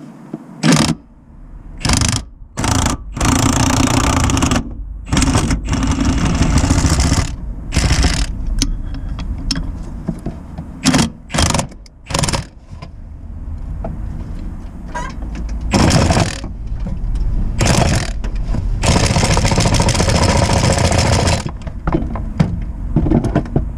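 Power tool driving a bolt in the gearbox mount bracket through a socket on a long extension, run in repeated bursts: short blips and several longer runs of one to three seconds, the longest near the end.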